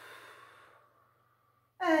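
A woman's long, audible exhale through the mouth, a breathy rush that fades away over about a second and a half, as cued for the breathing of a seated stretch. Her voice comes back in near the end.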